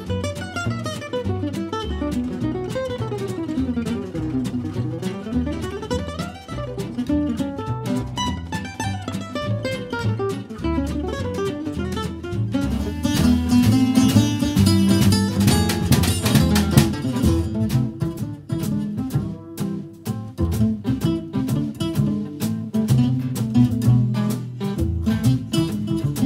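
Acoustic guitar in gypsy-jazz style playing fast runs of single notes that climb and fall, then about halfway through switching to loud, rhythmic strummed chords.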